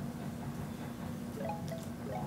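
Faint chime-like bell tones, a few short notes stepping upward near the end, over a low steady hum.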